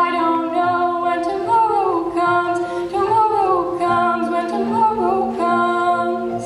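A cappella choir holding sustained chords under a female solo voice that slides up and down through the melody, with no instruments.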